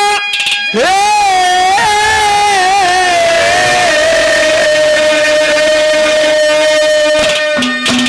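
Live Haryanvi ragni: a male folk singer sings a long, high note into the microphone over live accompaniment. The note wavers in pitch for about two seconds at first, then is held steady for several seconds.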